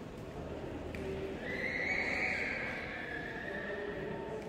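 A single long high-pitched cry lasting about two seconds, starting about a second and a half in and sliding slightly lower as it fades.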